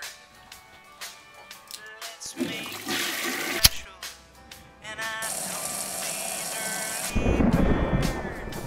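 Film soundtrack with music throughout. A rushing swell comes about two and a half seconds in, then a single sharp click of a lighter being flicked. A loud low rumble follows near the end.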